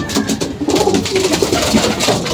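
Racing pigeons cooing, the low calls repeating and overlapping.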